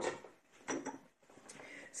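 Faint handling sounds on a wooden table: chopped garlic being gathered on a wooden cutting board and a small glass jar picked up, with one brief louder sound just under a second in.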